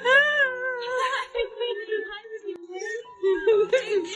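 A dog whining excitedly: one long whine, about a second, that rises and then falls, followed by a lower, wavering whine that bends up and down.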